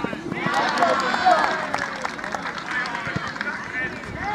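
Voices calling out across an open football pitch during play, with a few short sharp knocks among them.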